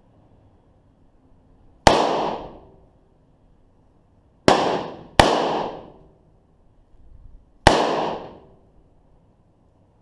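Smith & Wesson Governor revolver fired four times: a shot about two seconds in, two more in quick succession under a second apart around the middle, and a fourth near the end. Each report is sharp and dies away over about half a second.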